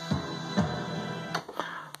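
Opening of a film soundtrack's first track playing from CD through a Sony Xplod boombox: sustained synthesizer-like tones over a low beat about every half second, fading near the end. This is the track's full intro, the part cut off on an early vinyl pressing.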